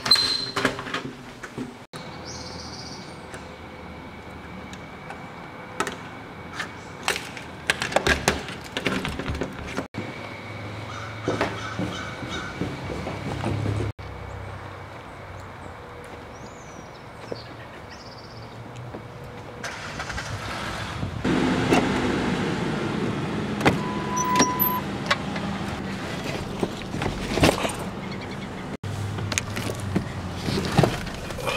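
A sequence of short handling sounds: a door handle clicking at the start, then scattered knocks and clicks. Car sounds grow louder over the last third.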